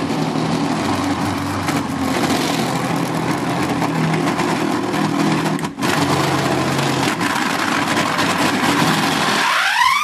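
Old Britânia electric blender running at speed, blending a thick mix of corn, cream and requeijão, with a brief dropout about 6 s in. It is the run during which the worn coupling under the jar broke apart, with a noise the owner points out.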